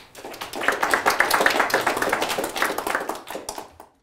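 Audience applauding: a dense patter of many hands clapping that swells within the first second and fades away near the end.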